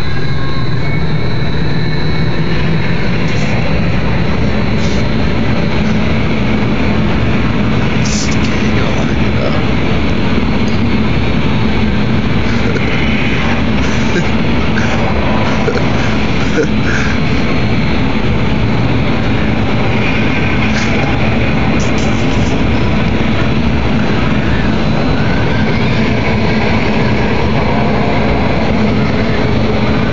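Loud, steady rush of wind from a hurricane simulator booth's blowers, its gauge reading about 65 mph near the end.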